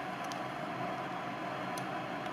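Steady low hum and hiss of a workshop's background, with one faint click near the end as the transducer's tap is handled.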